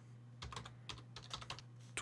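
Computer keyboard typing: a quick, irregular run of faint key clicks as a short sentence is typed.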